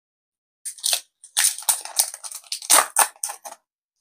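The foil wrapper of a Digimon Card Game booster pack being torn open and crinkled, in a series of short, irregular crackles over a couple of seconds.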